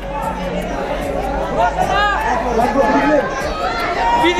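Several people talking over one another, overlapping chatter with no single voice standing out.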